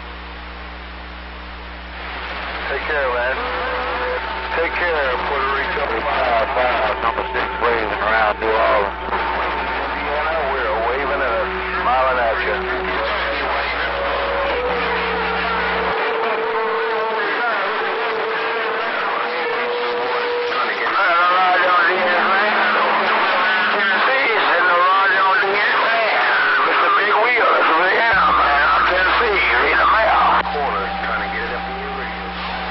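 A CB radio receiving distant stations: static hiss, then from about two seconds in several voices over one another on the band, with steady whistling tones under them.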